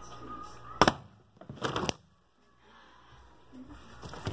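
Plastic water bottle tossed end over end in a bottle flip and landing with one sharp knock. Less than a second later come a short clatter and two more quick knocks as the bottle tips and rattles.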